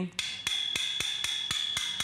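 A metal finger ring tapping rapidly on the powder-coated steel frame of an Origami 4-tier rack: a string of sharp metallic clicks, about four or five a second, over a steady high ringing from the steel. The ring of the metal is offered as the sign that the rack is solid steel, not particle board or plastic.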